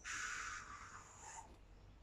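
A man hissing like a snake: one breathy hiss that starts sharply and fades out over about a second and a half.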